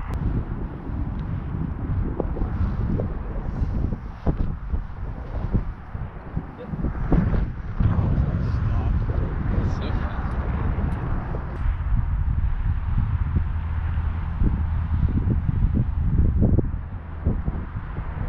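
Wind buffeting an outdoor camera microphone: a steady low rumble that swells and eases, with a few brief knocks.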